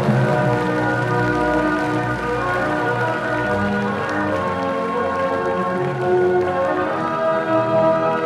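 Electronic organ holding sustained chords that change every second or two, with light clapping underneath.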